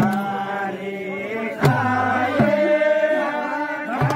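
A group of voices singing a Nepali folk song together in long held notes, with a deep drum struck three times, the second and third beats close together.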